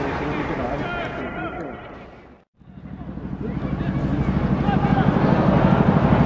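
Stadium crowd noise of many overlapping voices. It fades to silence about two and a half seconds in, then fades back up into a louder sound that pulses in a steady rhythm.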